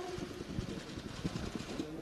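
A pause in speech filled with low, steady room noise and a faint murmur from the crowd of reporters around the microphones.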